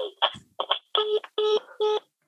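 Landline telephone tone after the call ends: short beeps at one steady pitch, repeating in quick groups of about three, starting about a second in. It is the line's busy tone that follows a hang-up, heard from the handset.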